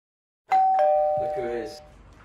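Doorbell chime ringing a two-note ding-dong about half a second in: a higher note, then a lower one, both ringing on together for about a second. A short laugh comes near the end.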